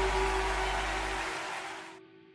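Squier Thinline Telecaster played through a Zoom G3Xn into a mic'd Peavey Rage 258 amp, the closing notes of the song ringing and fading out. The sound dies away almost to nothing near the end.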